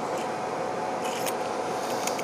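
Light handling of a metal takedown fishing pole as it is lifted and held: a few faint clicks and rubs over steady background hiss.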